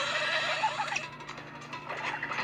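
A horse's whinny, a quavering call through about the first second, over soft background music.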